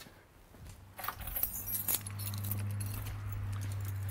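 Keys jangling with a few clicks as the key ring is handled, over a steady low hum that comes up about a second and a half in.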